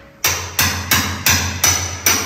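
Hand hammer driving nails into a concrete wall: five sharp, evenly spaced blows, about three a second, each with a metallic ring.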